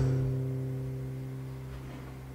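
Acoustic guitar chord ringing out and slowly fading.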